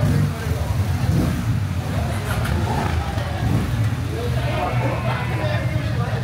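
Motorcycle engine idling with a steady low rumble, with people talking in the background.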